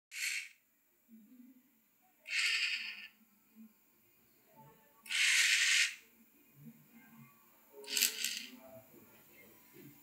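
Small geared DC motors of a four-motor Arduino robot car whirring in four short bursts, each half a second to a second long, with pauses between.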